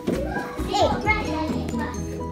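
Children's high-pitched voices calling and squealing in the first half, over steady background music.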